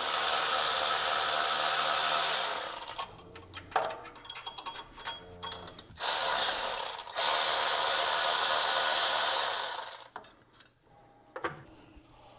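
Cordless electric ratchet spinning out the half-inch alternator bracket bolts: a steady motor whir for about two and a half seconds, light clicks and rattles of handling, then two more runs, the last about three seconds long.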